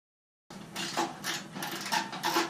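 Light metallic clicks and rattles of hands working inside a clothes dryer's sheet-metal cabinet, pulling wire connectors off a thermal switch, starting about half a second in and coming several times a second.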